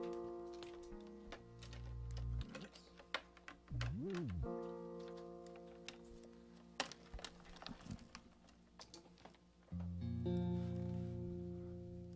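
Semi-hollow electric guitar sounded off the cuff: three chords strummed and left to ring out, with a string's pitch sliding up and back down about four seconds in. Small clicks and taps of fingers on strings and guitar body fill the gaps between the chords.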